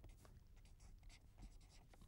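Faint strokes of a marker pen writing on paper: a handful of short, soft strokes over a low steady hum.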